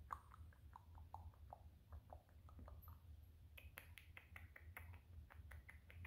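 Long fingernails scratching and rubbing through a small dog's fur around its head and ears, heard as a faint run of quick clicks and scratches. The clicks turn sharper and brighter about halfway through.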